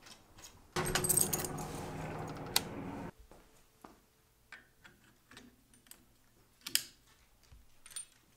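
Slatted window blinds rattling as they are drawn open, a clattering that starts about a second in and cuts off abruptly about two seconds later. Then faint clicks and taps of a condenser microphone and its spider shock mount being handled, with one sharper clack near the end.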